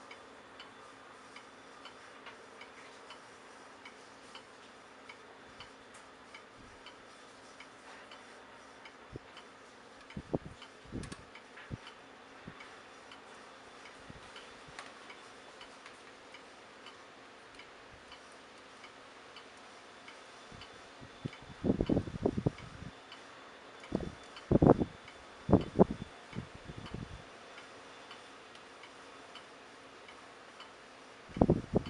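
Faint, regular ticking over a low steady background, with several short, low thumps: a few about a third of the way in and a louder cluster in the last third.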